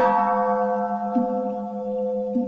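A Buddhist bowl bell is struck once and its tone rings on, slowly fading. A faint soft knock comes about a second in.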